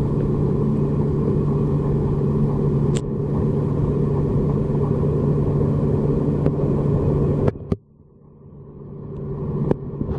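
Steady low hum and rumble with a held low tone, picked up through a waterproof compact camera's sealed body underwater, with a faint click about three seconds in. About seven and a half seconds in, the sound drops away suddenly and then swells back up over a couple of seconds.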